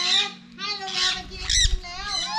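Parrots squawking in an aviary: three harsh calls, the sharpest near the end.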